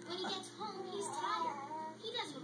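Quiet singing, a high child-like voice, over music, playing from a television in the room.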